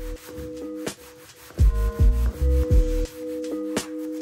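Background music with sustained tones and a regular bass beat that enters about a second and a half in, over the rubbing of a hand sanding block on a primed wooden table.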